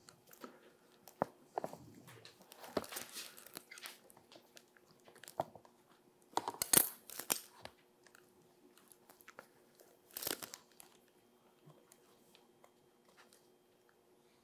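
Stiff calf vellum crackling and rustling as it is handled and rubbed down over the edges of a book's boards, in short bursts, the loudest about 3, 7 and 10 seconds in.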